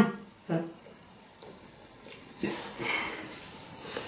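Wet chewing and mouth sounds of people eating burgers, soft and close, heard mostly in the second half after a short murmured "mm-hmm" at the start.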